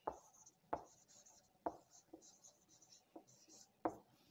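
Marker pen writing on a whiteboard. It makes a faint scratchy squeak, with about six sharp taps as the tip meets the board at the start of strokes.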